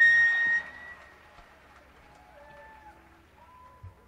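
A sharp, high-pitched note sounds loud for about half a second and then fades, followed by faint audience chatter and a single low thump shortly before the end.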